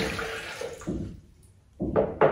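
Water poured from a drinking glass into an empty blender jar, the stream tapering off after about a second. Near the end, a short knock as the glass is set down on the countertop.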